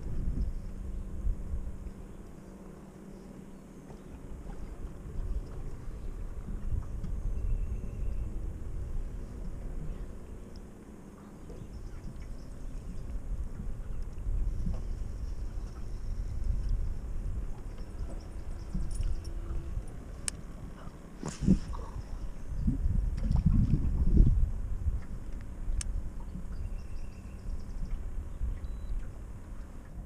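Ambience on a small fishing boat on open water: low wind rumble on the microphone with a faint steady hum and a few light clicks. A sharp knock about two-thirds of the way through is followed by a few seconds of louder rumble.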